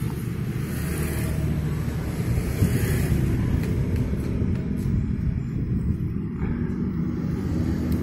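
A steady low rumble of background noise with no distinct events, like a running engine or traffic close by.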